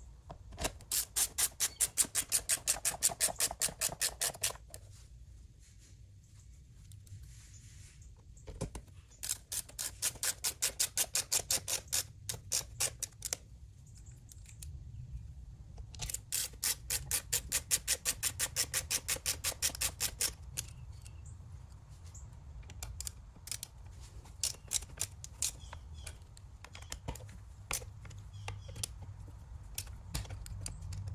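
Ratcheting screwdriver clicking rapidly as it drives screws into a plastic string-trimmer engine cover, in three long runs of fast, even clicks, followed by scattered single clicks.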